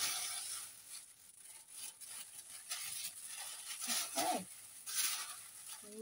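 Large sheet of thin tissue paper being peeled slowly off an inked printing plate: a faint crackling, rustling noise as the paper lifts away from the tacky ink, loudest at the start and swelling again a few times. A brief vocal sound about four seconds in.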